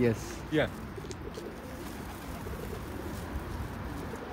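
A flock of feral pigeons cooing steadily.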